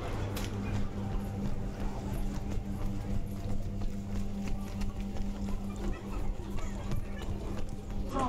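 Footsteps on a cobblestone street over a steady low drone.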